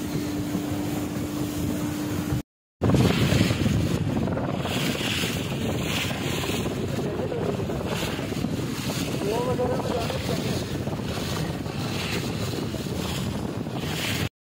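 Small motorboat under way on open sea, its engine giving a steady hum, with wind buffeting the microphone and water rushing past. The sound cuts out briefly about two and a half seconds in, then carries on as wind and water noise.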